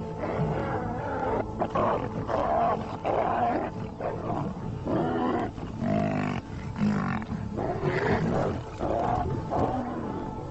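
Lions snarling and roaring in a fight with a herd of African buffalo: a string of short, harsh calls of under a second each, one after another, over a music bed.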